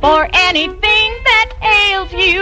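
A high-pitched voice singing a short phrase of quick syllables, then holding a note with a wide vibrato near the end, with little accompaniment underneath.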